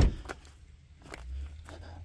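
A sharp knock at the very start, then a few soft scattered footsteps on dry leaves and dirt over a low rumble.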